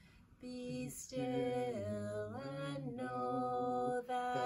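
A woman singing a slow, simple worship song alone and unaccompanied, holding long steady notes with small slides between them. The voice comes in about half a second in after a brief pause.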